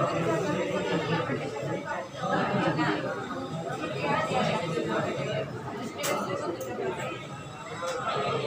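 Speech only: indistinct chatter of several voices talking in a room, with a few short clicks about six seconds in.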